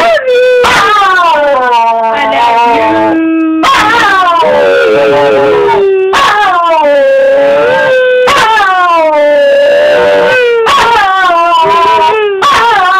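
Wire fox terrier howling in excitement at its owner coming home: about five long, drawn-out howls one after another, each starting high and sliding down in pitch, with short breaks between.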